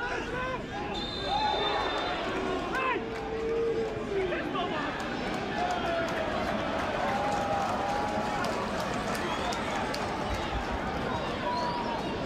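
Pitch-side sound of a football match in play: players shouting and calling to each other across the field, scattered voices over a steady outdoor noise bed.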